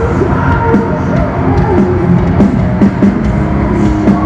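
A live rock band playing loud on stage, with a drum kit hitting steadily through the band's sound, heard from among the audience through the hall's PA.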